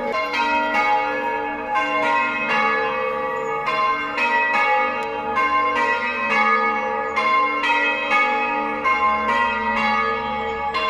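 Church bells being rung full-circle on ropes in English change ringing, one bell striking after another in a steady rapid sequence of about three or four strokes a second.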